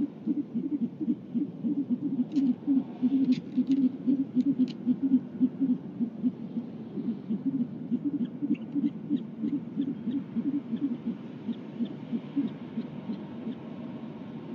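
Great horned owl giving a long, rapid run of low hoots, about four or five a second, that thins out near the end, with a few faint sharp clicks over it.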